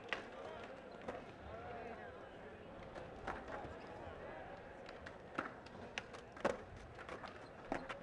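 Skateboards on a smooth indoor floor: sharp clacks of boards popping and landing every second or two, over the steady chatter of a crowd.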